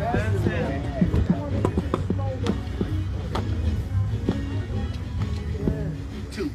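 A group of people singing a gospel song together, with sharp handclaps at uneven intervals.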